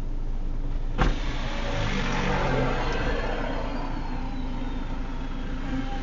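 Car driving, heard from inside the cabin: steady engine and road noise, with one sharp knock about a second in and the noise swelling a little after it.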